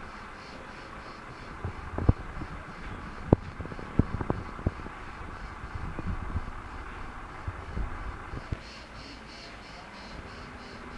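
Crickets chirping in a steady, faint rhythm of about two to three pulses a second. Over it comes a scatter of low knocks and thumps from about two seconds in until near the end.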